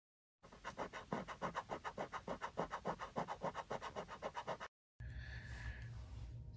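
Rapid, even scratching strokes, about six a second, typical of a coin scraping the latex off a scratch-off lottery ticket. The strokes stop suddenly a little before the end.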